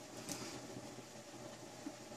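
Quiet room tone with a steady faint hiss, and a faint brief rustle about a third of a second in.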